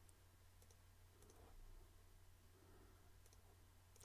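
Near silence with a low steady hum, broken by a few faint computer-mouse clicks as edges are selected.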